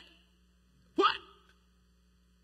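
A man's short, sharp exclamation 'What?' about a second in, just after the tail of another brief exclamation at the start; otherwise low room tone.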